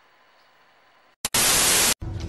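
Faint hiss, then, about a second and a quarter in, a click and a loud burst of static-like white noise lasting just over half a second that cuts off suddenly.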